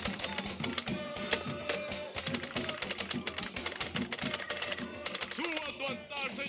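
Typewriter-style typing sound effect: rapid key clacks in short bursts as a title is typed out letter by letter, over soft background music.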